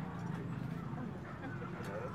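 Faint voices talking over a low steady hum, with a few scattered light clicks.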